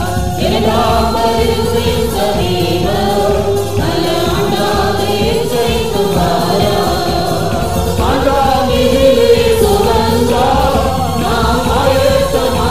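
A Christian worship song: a group of voices singing together over music with a steady low beat.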